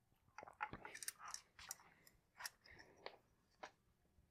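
Faint small clicks and scrapes of a steel dial caliper being slid and seated on a tennis racket's frame, a quick irregular string of them over about three seconds.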